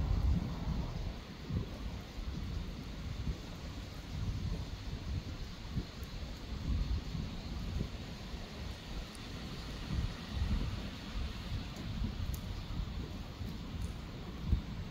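Wind buffeting the microphone in uneven gusts, over a steady soft hiss of light rain.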